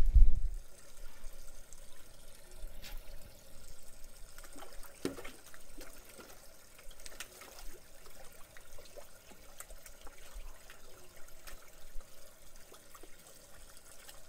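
Water trickling and splashing in an aquaponics system, a low steady pour with a few faint scattered ticks.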